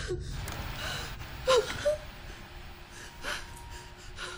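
A frightened woman gasping and whimpering in several short breaths, the loudest pair about one and a half seconds in.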